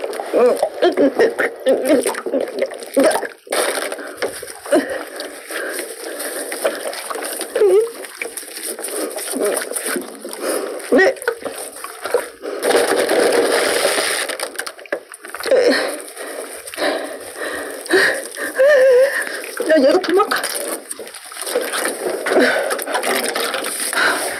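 Wet squelching and rubbing of a large raw octopus being gripped and scrubbed with coarse salt by gloved hands, with a denser stretch of rubbing noise about twelve to fourteen seconds in. A woman's voice comes in short bursts throughout.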